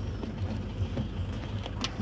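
Low, steady outdoor rumble with faint knocks from a hand-held phone being moved around, and a sharp click near the end.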